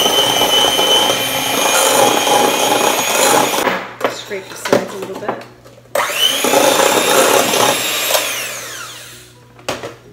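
Electric handheld mixer beating butter, brown sugar, egg, half-and-half and vanilla into a creamed mixture. It runs with a steady whine, stops about four seconds in, restarts with a rising whine about six seconds in, and winds down near the end with a falling pitch.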